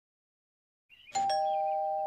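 Two-note ding-dong doorbell chime, starting about a second in: a higher note, then a lower one a moment later, both ringing on together.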